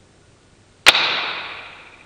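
Stretched rubber balloon let go and snapping back: one sharp snap about a second in, followed by a ringing that fades over about a second.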